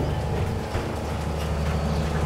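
Steady low mechanical hum of the MV Ilala ferry's machinery running while the ship is docked.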